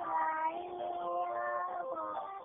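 A young boy singing a Spanish-language song over backing music, holding long notes.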